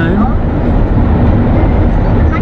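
Steady road and tyre noise with engine hum, heard from inside a van's cabin as it drives through a long road tunnel.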